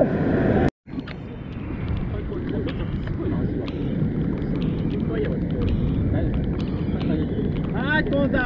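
Surf washing around the camera, cut off suddenly under a second in. Then a steady rush of wind and surf with faint voices of people nearby.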